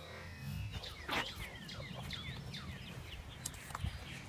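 Background music fades out, then outdoor birds chirping in a series of short, falling chirps. A brief louder noise comes a little over a second in.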